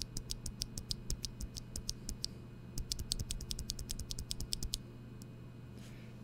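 Unlubed NovelKeys Cream linear mechanical keyboard switch pressed and released rapidly, several clicks a second, in two runs with a short pause between them. It sounds rather scratchy, with a pingy spring, which the reviewer puts down to the switch being unlubed and not yet broken in.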